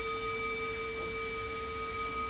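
Hand-held brass singing bowl ringing under a wooden mallet: one steady low tone with a few higher tones sounding together, held at an even level.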